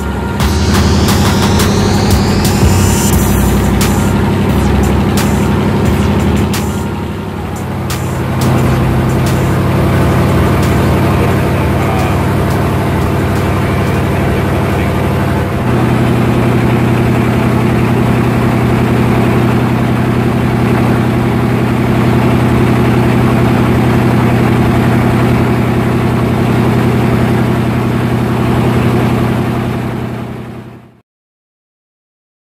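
A boat's engine running steadily on board, a constant low drone. Its pitch and tone shift slightly about eight seconds in and again about halfway through.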